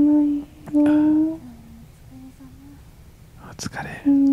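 A woman's soft, close-up 'mm' hums from a Japanese ASMR sleep-call recording: about five short hums at a steady pitch, the later ones fainter and one dipping lower, then a breathy, whispery sound near the end.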